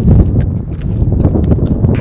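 Wind buffeting the microphone, a loud low rumble, with scattered small clicks and knocks over it.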